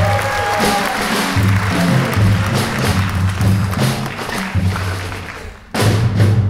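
Jazz piano trio playing live: a drum kit with cymbals over a bass line, with a few held piano notes near the start. The music dips briefly just before the end, then comes back in loudly.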